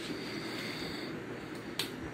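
Steady room hiss with a single short, sharp click near the end.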